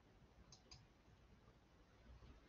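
Near silence: room tone with two faint clicks, a fraction of a second apart, about half a second in.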